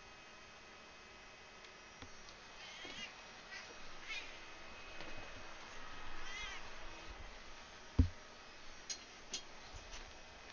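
A cat meowing a few times, short rising-and-falling calls, with a single dull thump about eight seconds in.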